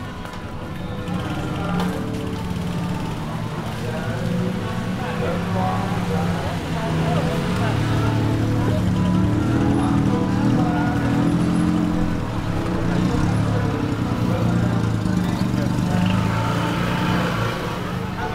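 Busy night-street ambience of crowd chatter and music, with a motor vehicle's engine running slowly close by: its low hum grows louder through the middle and eases near the end.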